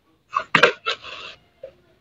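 A brief snatch of a person's voice and breath over a video-call microphone, a few short sounds lasting about a second, starting about a third of a second in.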